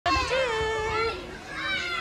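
Young children's high voices calling out: one long held call near the start, then shorter calls near the end.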